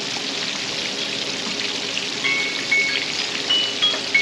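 Flour-dredged pork chops shallow-frying in hot canola oil, a steady sizzle. A few short high chirps sound over it in the second half.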